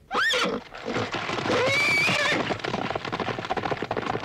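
Horses whinnying twice, a short rising call at the start and a longer wavering one around two seconds in, over a fast, continuing patter of galloping hooves.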